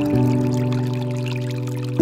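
Slow instrumental relaxation music: a held chord that changes just after the start and slowly fades, over the steady pour of water from a bamboo fountain spout.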